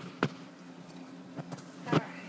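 Sharp knocks of a handheld phone bumping against the wire bars of a budgie cage as it is moved around: one about a quarter second in, a faint one later, and another just before the end, over a low steady hum.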